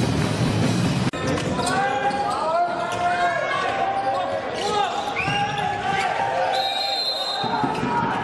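Background music cuts off about a second in, giving way to the live sound of an indoor handball game: the ball bouncing on the court, short squeaks of shoes on the hall floor, and players' and spectators' voices.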